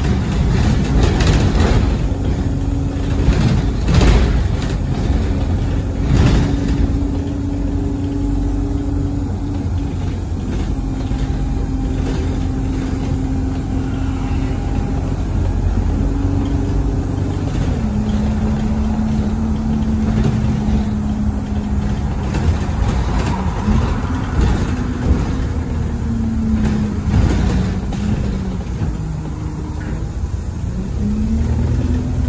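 Inside a single-deck Stagecoach London Alexander Dennis Enviro200 bus on the move: a steady engine and road drone, with a whining tone that steps and shifts in pitch as the bus changes speed. A few knocks and rattles come in the first several seconds.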